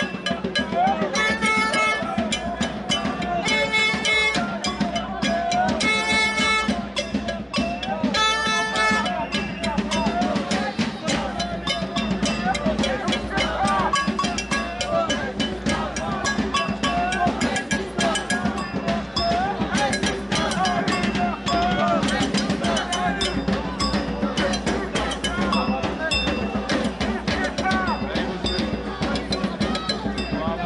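Drums beating a steady rhythm within a marching crowd, with voices underneath. In the first several seconds a pitched tone sounds four times in blasts of about a second, roughly every two and a half seconds.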